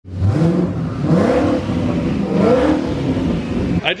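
Twin-turbocharged Coyote 5.0 V8 of a 2019 Ford Mustang GT revving loudly, its pitch climbing and dropping a few times, then cutting off just before the end.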